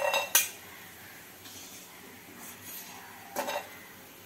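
Steel perforated skimmer clinking against a stainless-steel kadai and bowl while fried pieces are lifted out of the oil: two sharp clanks at the start, a few softer knocks in the middle, and another group of clanks about three and a half seconds in.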